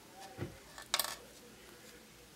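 Hands handling a grosgrain ribbon bow: faint handling noise with one short scratchy rustle about a second in.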